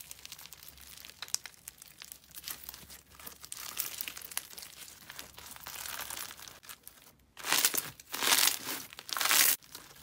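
Foam-bead slime squeezed and stretched by hand, the beads giving a fine crackling. About seven seconds in, it turns to loud bursts of crackling, about one a second, as the slime is kneaded.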